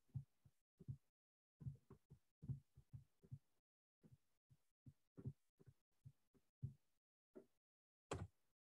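Near silence broken by faint, short low thumps that come irregularly, about two or three a second.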